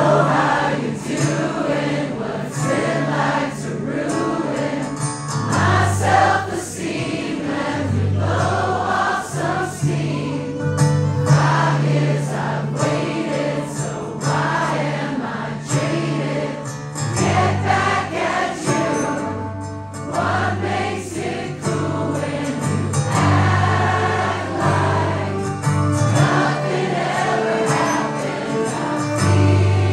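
Live band performance of a rock song: a man singing lead over strummed acoustic guitar, with held low bass notes and bowed violins.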